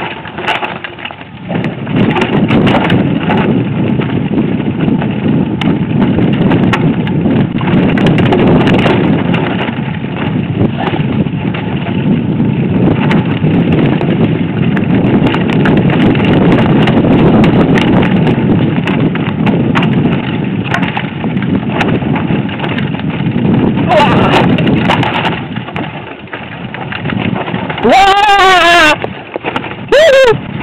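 Mountain bike riding down a rough dirt and rock singletrack: a continuous loud rumble of wind buffeting and tyre noise, with frequent rattles and knocks from the bike over the rough ground.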